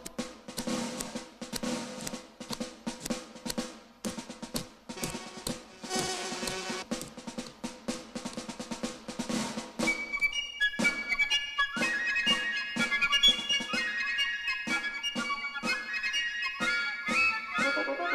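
Soundtrack music: quick, busy drumming with rapid strikes, joined about ten seconds in by a melody of higher stepped notes over the beat.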